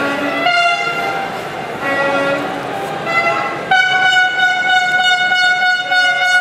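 Horns blown in a large crowd: a few short toots, then one long steady blast from a little over halfway through, over crowd noise.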